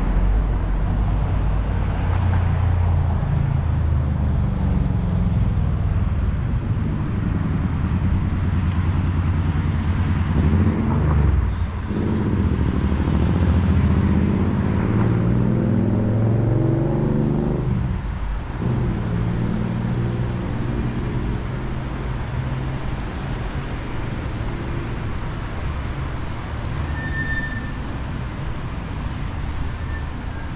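City street traffic: cars driving past with a steady engine and tyre rumble, one engine rising and falling in pitch in the middle.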